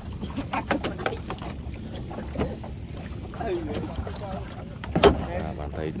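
Several sharp knocks, the loudest about five seconds in, over people talking and a low steady rumble.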